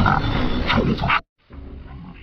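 TV station logo jingle audio processed with a 'Sick Voice' distortion effect, loud and heavily distorted. It cuts off abruptly a little over a second in, and after a short silence a much quieter distorted sound from the next logo begins.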